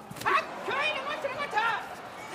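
Sumo wrestlers' bodies colliding at the charge (tachiai), a single sharp slap just after the start. It is followed by the gyoji referee's short, high, sing-song calls of "nokotta" as the bout gets under way.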